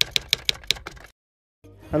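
Typewriter-style key-strike sound effect: sharp clicks at about six a second that cut off a second in. After a short dead silence a man's voice starts near the end.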